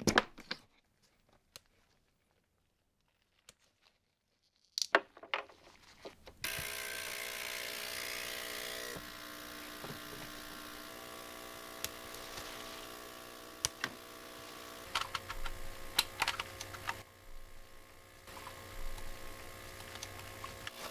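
Ultrasonic cleaner filled with isopropyl alcohol switching on about six seconds in and running with a steady buzzing hum and hiss, with scattered small clicks of handling over it.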